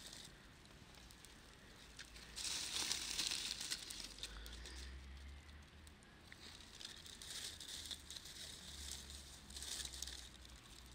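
Dry leaves rustling and crackling as a small leaf fire is lit and handfuls of leaves are pushed onto it, loudest in a burst a couple of seconds in and again near the end.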